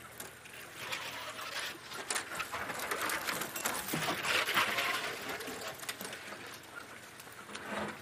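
Branches and twigs scraping and snapping against an open safari vehicle as it pushes off-road through dense bush: a crackling, rattling noise made of many small snaps, loudest in the middle.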